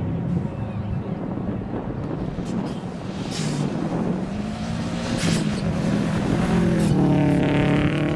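Subaru Impreza rally car's engine running under load as it drives across grass, with three brief hisses along the way. Near the end the engine revs harder and grows louder as the car comes toward the listener.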